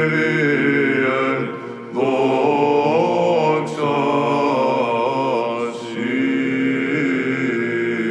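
Orthodox Byzantine chant in the plagal fourth mode, sung by Athonite monks: a melismatic melody that winds over a held low drone note (the ison), with short breaks between phrases about two seconds in and again near six seconds.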